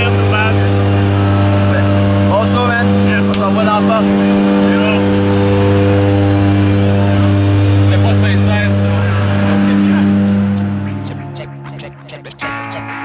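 Propeller aircraft engine droning steadily inside the cabin of a skydiving jump plane, a deep even hum with faint voices over it. It falls away near the end.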